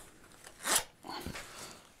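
A short, sharp breath through the nose about two thirds of a second in, followed by faint rustling of fabric as the vest is handled.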